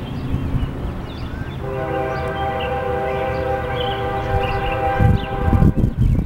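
Locomotive air horn sounding one long blast of about four seconds, a chord of several steady tones, starting a little under two seconds in. Faint bird chirps continue underneath, and gusts of wind buffet the microphone near the end.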